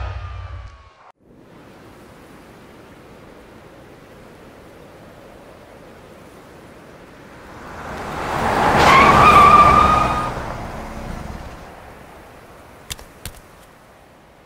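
Steady outdoor hiss of wind-like ambience, then a vehicle that approaches and passes with a rising rumble and a steady whine. It is loudest about nine seconds in and fades away. Two sharp clicks come near the end.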